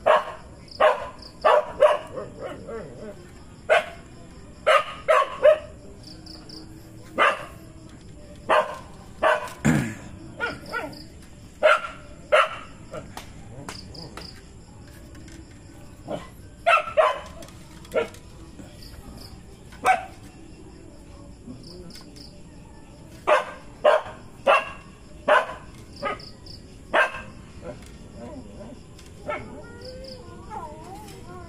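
A dog barking over and over in short, sharp barks, about twenty in groups with pauses between. A faint, high chirp pulses regularly underneath.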